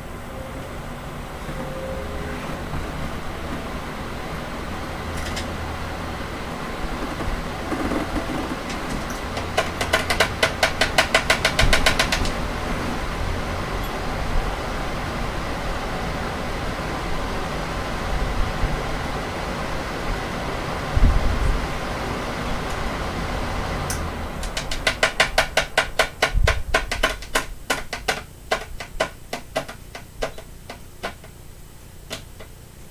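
A Lasko high-velocity fan and three box fans running together on low speed, a steady rush of air. Twice a run of rapid ticking, about six a second, lasts a few seconds, and a single low thump comes about two-thirds of the way through.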